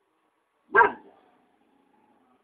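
A single short, loud bark-like animal call about three-quarters of a second in.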